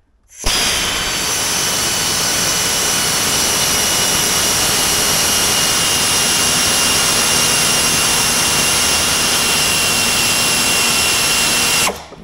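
Quarter-inch air ratchet with a screwdriver bit running steadily, a loud hiss of air with a high whine. It starts about half a second in and stops just before the end. It is trying to drive a screw into the plastic dash, but the screw does not seem to go in: put down to the plastic being tough, or the screw not being in the right spot.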